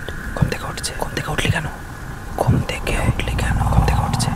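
Several layered whispering voices, with a low rumble swelling in the second half.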